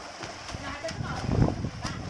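Water splashing and slapping as several people thrash about in a small pool, with shouting voices over it and a louder moment about halfway through.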